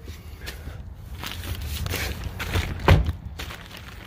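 Footsteps and handling noise as the camera is carried over to a rolled-up length of quilted diamond material, with one sharp knock about three seconds in.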